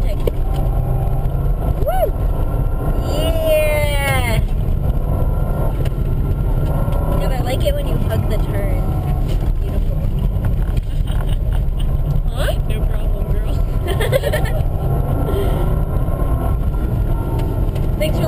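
Interior cabin noise of a Subaru Impreza 2.5TS driving on a snowy road: a steady low rumble of the flat-four engine and tyres, with a short pitched sound that slides down in pitch about three to four seconds in.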